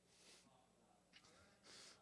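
Near silence: a pause in speech, with a faint intake of breath near the end.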